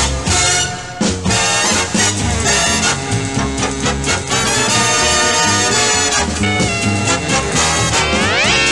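Instrumental radio station jingle music bed in a swing style, led by brass over a steady beat.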